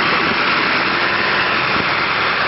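Snowplough truck with a front blade and gritter body working a snow-covered road: a steady engine sound under a strong, even hiss that holds throughout.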